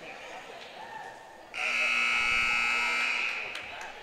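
Basketball scoreboard buzzer sounding once, a steady harsh tone lasting about a second and a half, starting abruptly about a second and a half in over low gym background noise.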